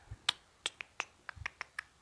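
About ten light, sharp clicks in a quick, irregular run, with a couple of soft low thumps among them.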